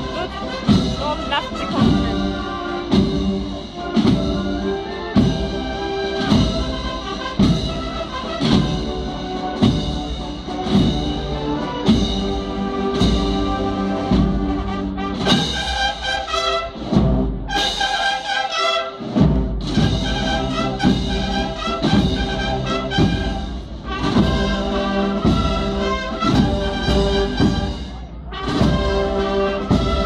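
Brass band of trumpets, trombones and tubas playing, with drums keeping a steady beat about twice a second. The drums drop out briefly about halfway through while the brass carries on.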